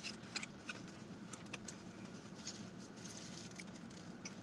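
Faint handling sounds of a foam takeout box and plastic cutlery: scattered small clicks and light rustling, over a faint steady low hum.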